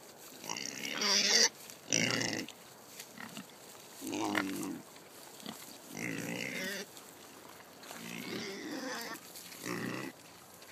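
Kunekune pigs grunting noisily in short bursts about once a second, the loudest in the first two seconds, excited over a feed of pumpkin.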